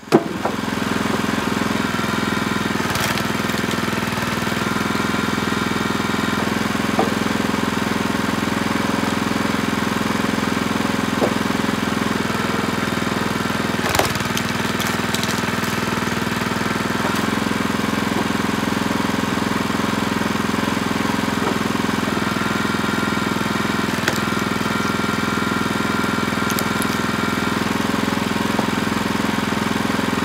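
Small gasoline engine of a Split Fire 2265 hydraulic log splitter running steadily, with a few sharp knocks over it.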